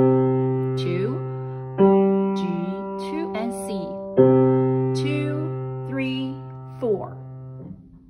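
Piano playing the closing notes of a beginner arrangement: three low notes struck about two seconds apart, each left ringing and fading under a held note, then released together near the end.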